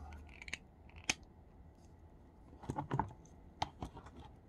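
Small plastic clicks and taps from action figures being handled: a sharp click about a second in, a cluster of clicks near three seconds, and two more near the end.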